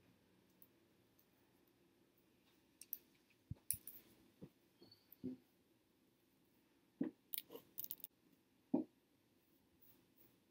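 Faint scattered clicks and light taps of small items being handled. They come in quick clusters about three to four seconds in and again about seven to eight seconds in, with one more a little later.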